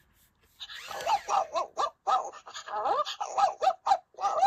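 WowWee Dog-E robot dog's speaker playing a run of short electronic puppy yips and whimpers that slide up and down in pitch, starting about half a second in: its response to having its head petted.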